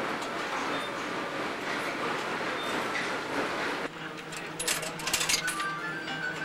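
A steady, indistinct hubbub for about four seconds. It then cuts to slot machines: steady electronic tones and beeps, with a quick burst of sharp clicking and rattling about five seconds in.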